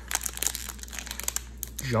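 Plastic wrapper of a baseball card pack crinkling in the hands as it is pulled open at its crimped seam, with irregular small crackles throughout.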